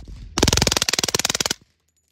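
Suppressed Kriss Vector .45 submachine gun firing on full auto: one long, very rapid burst of about a second, which cuts off suddenly.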